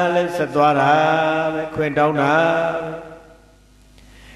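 A Buddhist monk's voice chanting into a microphone in long, steady-pitched phrases, trailing off about three seconds in.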